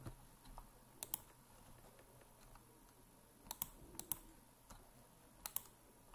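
Faint, sharp clicks from a computer mouse, in four quick pairs spread over a few seconds, as points are picked on the screen.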